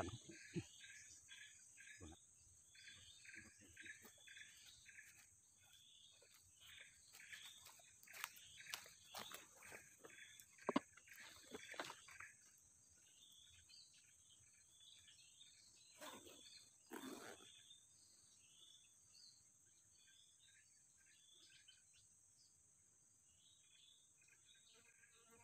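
Faint creekside wildlife: a steady high insect drone with a run of quick, repeated chirping calls through the first half. A few soft knocks and rustles come about halfway through and again later.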